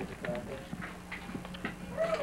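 Faint background voices with a few scattered light clicks and taps, over a steady low hum.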